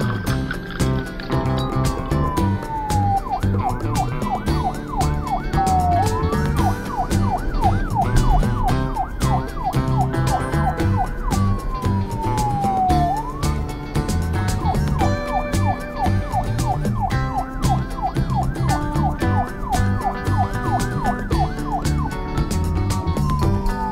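A police siren sound effect over background music, alternating between a slow falling wail and a fast yelp of about three warbles a second, the cycle coming round several times.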